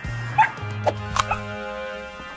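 Cartoon puppy giving a few short yips over background music.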